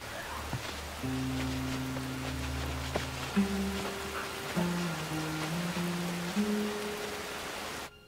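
Steady rain falling, with a slow musical score of low held notes coming in about a second in and shifting pitch every second or so.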